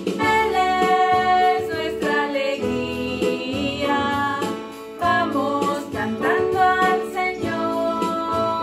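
Two women singing a hymn together, accompanied by an electronic keyboard, with a brief break between phrases a little before the middle.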